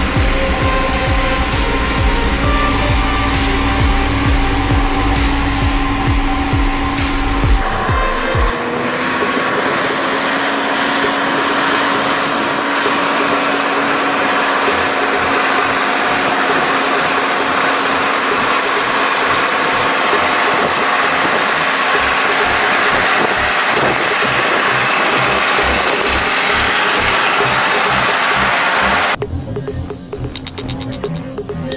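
Heavy diesel truck engines running on unpaved roads, heard across separate clips: a steady hum for the first several seconds, then an abrupt change about eight seconds in to a noisier running sound, and another cut near the end.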